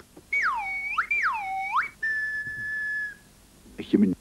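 A whistle swooping down and back up twice, then holding one steady note for about a second.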